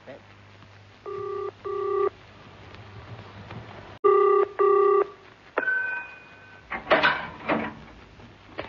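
Telephone bell ringing in the British double-ring pattern, two double rings, the first pair fainter and the second louder. Then a click, a short steady tone, and a brief voice sound near the end.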